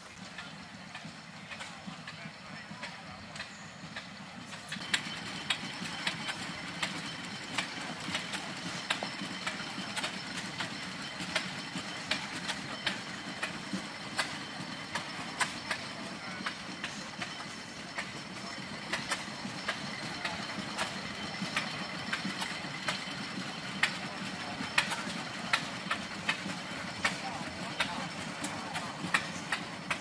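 Outdoor ambience of indistinct voices and a running engine, with many irregular sharp clicks, louder and denser from about five seconds in.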